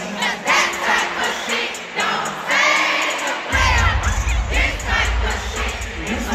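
Arena concert crowd singing along and shouting over amplified music, with a heavy deep bass kicking in suddenly about three and a half seconds in.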